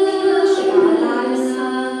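A song sung by a woman's voice and children's voices together, with long held notes.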